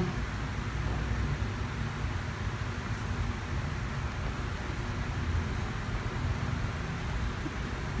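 Steady low rumble with a faint hiss of background noise, with no distinct events.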